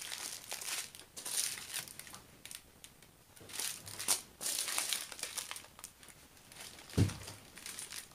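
Small clear plastic bags of diamond-painting drills crinkling in scattered bursts as they are picked up, handled and set down. A single soft thump about seven seconds in.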